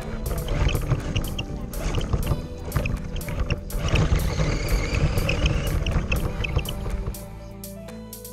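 Background music over the driving noise of a radio-controlled truck running across gravel and then grass, picked up by a camera mounted on the truck. The driving noise stops about seven seconds in, leaving only the music.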